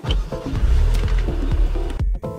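Infiniti QX30's 2.0-litre turbocharged four-cylinder engine starting up about half a second in and then running steadily, with electronic background music over it.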